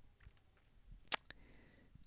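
Quiet room tone broken by one sharp click a little past halfway, followed by a fainter click.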